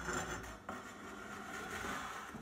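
C-Beam gantry plate rolling on its wheels along an aluminium C-Beam linear rail as it is slid off the end: a steady rolling sound that changes suddenly about two-thirds of a second in.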